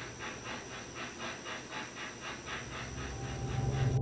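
A dog panting quickly and evenly, about six breaths a second, a soft hissing sound.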